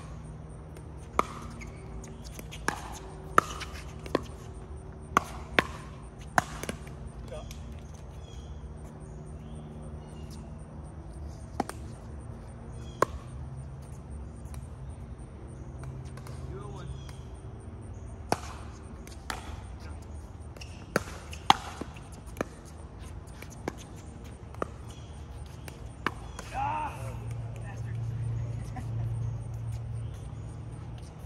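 Pickleball paddles striking the hollow plastic ball in rallies: sharp single pops about a second apart, in a run of several over the first few seconds, then more scattered hits later.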